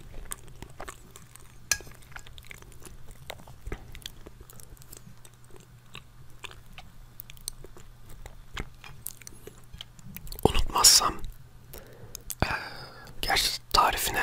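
Close-miked chewing of a soft chocolate biscuit cake with banana: a run of small wet mouth clicks and smacks. Louder noisy bursts come about ten seconds in and again near the end.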